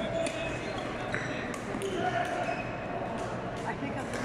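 Badminton rally: sharp racket strikes on the shuttlecock and short shoe squeaks on the court floor, over the murmur of spectators talking.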